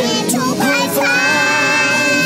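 A child's high singing voice in a children's song: a short bending phrase, then one long held note from about a second in, over the backing music.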